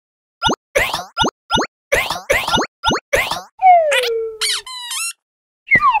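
Cartoon sound effects: a quick run of about eight short pops, roughly three a second, followed by a falling whistle-like slide with springy chirps and a brief stepped rattle, as pieces of a toy house pop into the scene.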